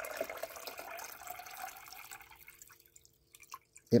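Water being poured into a glass beaker of sodium silicate solution to dilute it, a splashing pour that fades away over about three seconds.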